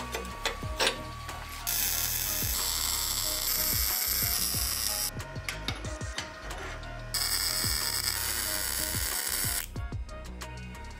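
Steel parts clicking as a plate is set in place, then two stretches of steady electric-welding crackle, each about three seconds long, with a short pause between.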